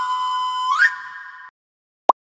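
Synthesized whistle-like logo sting: an electronic tone held steady, then sweeping sharply upward just under a second in, fading away and cutting off about a second and a half in.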